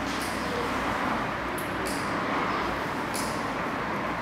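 Steady mechanical whirring and hiss from an animatronic triceratops model's drive motors as it moves its head and jaw, with faint short high hisses about once a second.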